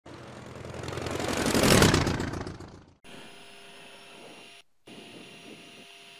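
A rushing jet-engine noise that swells to a loud peak and dies away within the first three seconds. It cuts abruptly to the steady hum of a Gulfstream G-IV cockpit, with faint steady tones, as the jet taxis.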